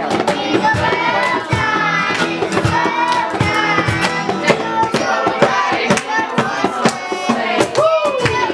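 A group singing a song together, children's voices among them, with steady hand-clapping along to the beat.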